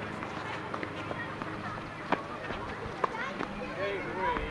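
Tennis ball being hit during a doubles rally on an outdoor hard court: a sharp pop about halfway through, and another about a second later.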